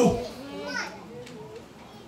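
A man's amplified preaching voice finishes a word, then faint voices are heard in the room, a child's among them, before he speaks again.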